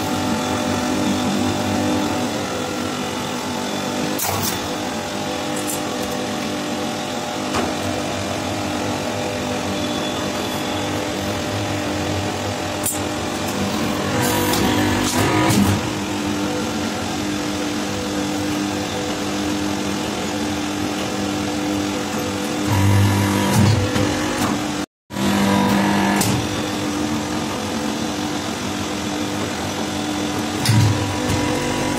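Hydraulic press's electric motor and pump running with a steady hum, with a few metal knocks and clanks from the dies; louder bursts come about halfway through and again near the end.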